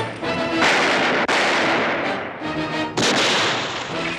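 Film-soundtrack gunfire: several loud shots, each trailing off in a long echo, over background music.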